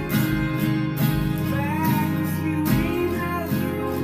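Acoustic guitar with a capo, strummed in a steady rhythm through a chord progression.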